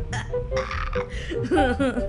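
A person laughing in short bursts over background music, breaking into a spoken word near the end.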